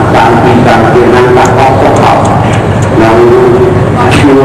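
A voice chanting in a melodic, sing-song delivery, with phrases that end on long held notes.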